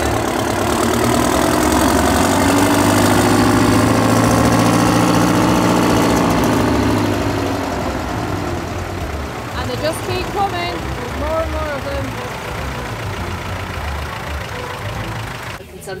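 Large John Deere tractor's engine running as it drives past close by, swelling to its loudest a few seconds in and then fading away. A smaller vintage tractor's engine follows more quietly, with voices nearby.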